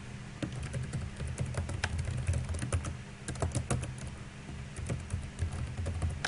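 Typing on a computer keyboard: a quick run of keystrokes, a short pause about four seconds in, then a few more, over a steady low hum.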